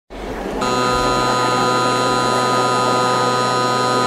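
Electronic intro sound effect: a rush of noise that, about half a second in, settles into a steady, loud buzzing drone of several held tones.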